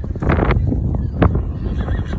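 Barrel horse galloping home across arena dirt: a run of hoofbeats over a low rumble, with a few sharper strikes.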